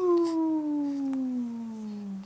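A long, drawn-out vocal 'oooh' from a single voice, sliding slowly and steadily down in pitch, with no break, and fading near the end.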